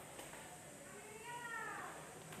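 A faint, high-pitched call that rises and then falls once, lasting under a second, in the second half, over quiet room noise.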